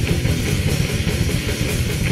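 Heavy metal recording: distorted guitars over fast, dense drumming, played at a steady, loud level.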